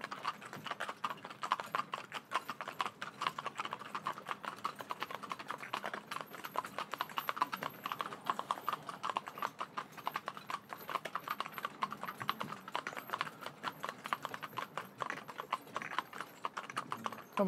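Hooves of three Shetland ponies driven abreast in a trandem, clip-clopping at a walk on a tarmac road: many overlapping hoofbeats in a continuous, even rhythm.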